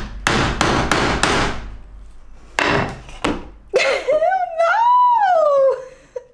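Sharp metal-on-wood knocks as a chisel-like tool is struck down onto plastic-coated wire on a wooden board, trying to cut through it: five quick knocks in the first second and a half, then a few more around three seconds in. Then a woman gives a long, wavering, high-pitched 'hmmm' that rises and falls.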